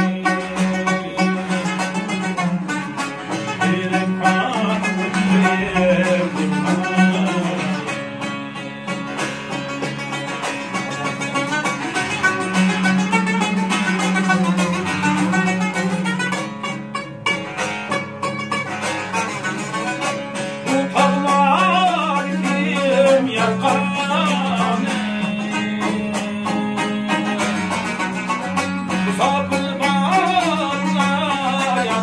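Uyghur dutar and tambur, long-necked plucked lutes, playing a folk tune together over a steady low note, with a man singing along.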